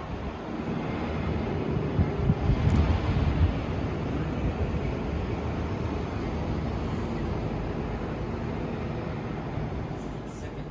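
Outdoor wind blowing across the microphone: a steady low rush, gusting harder between about two and three and a half seconds in.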